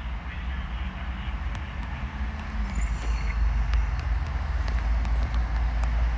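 A steady low rumble with a faint hum above it, and a few faint light ticks scattered through.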